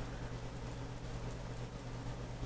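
Quiet room with a steady low electrical hum and faint light ticks and rustles as wire-wrapped crystals are handled in the fingers.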